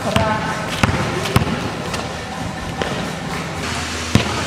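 A basketball bouncing on a hard court floor, several bounces in the first second and a half, then fewer.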